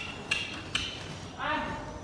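A horse trotting on soft arena footing: light, crisp hoof-and-tack beats about twice a second. A short voice sound follows near the end.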